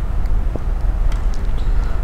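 Steady low background hum with a faint hiss under it, and no distinct sound from the line work.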